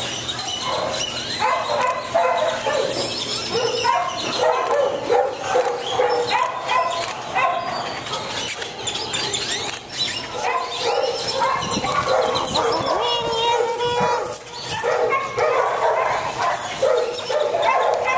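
Dogs barking, one bark after another with hardly a pause.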